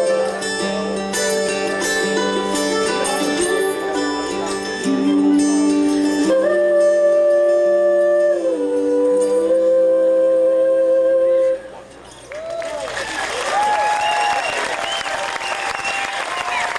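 Live acoustic bluegrass trio of fiddle, mandolin and acoustic guitar finishing a tune on long held notes, cutting off about eleven and a half seconds in. Audience applause follows to the end.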